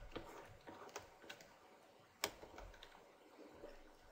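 Near silence with a few faint, scattered clicks, the sharpest about two seconds in.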